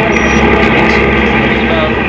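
Steady drone of a fishing vessel's diesel engine and deck machinery, a dense, even hum that does not change. A short high beep sounds just after the start.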